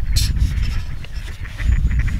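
Wind buffeting the microphone with a heavy low rumble, and a brief rustle just after the start. Near the end, waterfowl start calling in a quick run of short honks.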